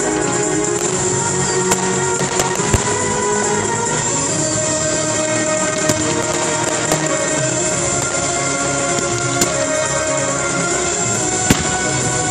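Fireworks going off to a music soundtrack: scattered sharp shell bursts and reports, the loudest a moment before the end, over continuous music with sustained notes.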